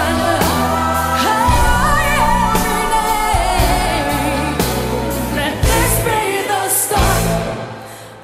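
Live pop ballad: a woman sings a drawn-out, bending vocal line over a band with a steady beat and bass. The music falls away near the end.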